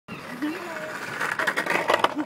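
A skateboard's wheels rolling over a tarmac road, with a run of sharp clicks and knocks in the second half; a person talks over it.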